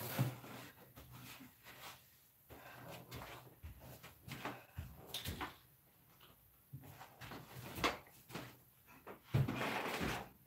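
Faint, scattered knocks and bumps from someone moving about the house off-microphone and handling doors, with louder knocks about five seconds in and near the end.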